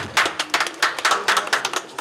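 A small group of people clapping after a ribbon cutting: many irregular, overlapping hand claps.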